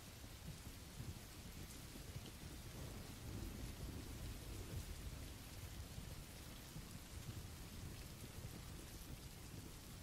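Faint, steady rain sound effect: an even hiss of falling rain with a low, shifting rumble underneath.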